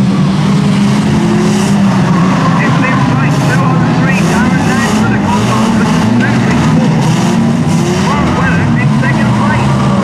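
Engines of several old saloon race cars running and revving together on a raceway circuit, a loud steady drone of many cars at once. Short high squeals come through from a few seconds in.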